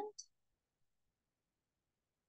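Near silence: room tone. The end of a spoken word comes at the very start, then one brief faint click.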